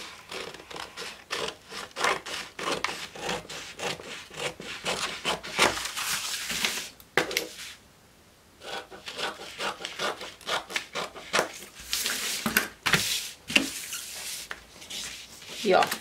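Scissors cutting through stiff brown pattern card, a run of rasping snips with a short pause about eight seconds in.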